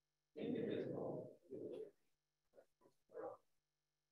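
Faint, indistinct voices in a few short bursts, too unclear to make out words, with dead silence between them.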